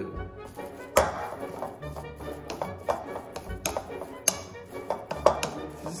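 Metal spoon clinking and tapping against a glass mixing bowl as stiff, crumbly butter and powdered-sugar frosting is stirred, in irregular sharp knocks starting about a second in, over background music.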